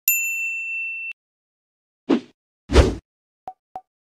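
Sound-effect notification ding, a clear high tone held for about a second that cuts off sharply, then two short hits past the middle and two quick small clicks near the end, typical of a subscribe-button animation.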